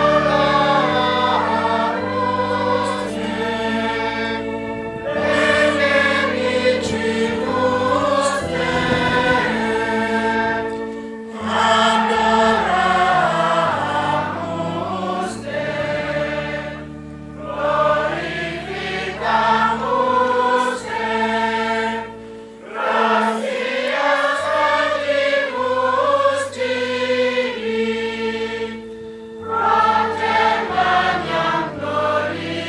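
Mixed church choir of men and women singing part of the Latin Mass, in phrases broken by short pauses, over long held low notes.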